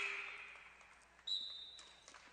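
One short, steady, high-pitched blast of a referee's whistle a little past halfway, over the faint hush of a gym.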